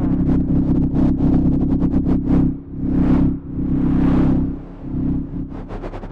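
Procedurally generated electronic sound of a light-and-sound installation: a dense, steady low drone with washes of noise that swell and fade about once a second above it. The drone briefly drops away near the end.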